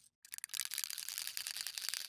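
Rapid rattling clicks of an aerosol spray-paint can being shaken, its mixing ball knocking inside; the rattle starts about a quarter second in.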